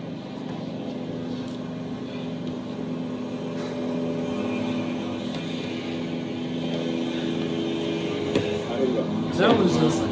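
Gas leaf blower engine running outside, a steady drone that grows slightly louder.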